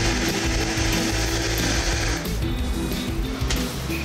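Countertop blender running at high speed, blending a drink, then switched off about two seconds in.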